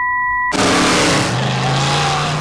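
A steady high beep tone from the TV cuts off abruptly about half a second in, replaced by the loud engine noise of cars in a demolition-derby broadcast.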